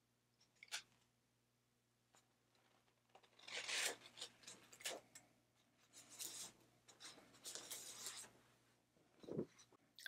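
Faint rustling and crinkling of sublimation transfer paper being peeled off a pressed canvas board: a few short rustles with quiet between, the longest about three and a half seconds in.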